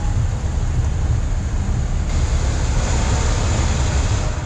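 Vehicles rolling past close by on asphalt: tyre and engine noise over a heavy low rumble of wind buffeting the microphone, the hiss getting brighter about halfway through.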